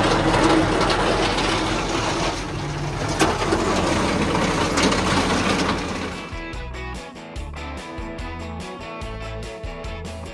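Tractor-towed silage feed-out wagon running as it discharges grass silage, a loud, dense mechanical noise. About six seconds in it gives way to background music with a steady beat.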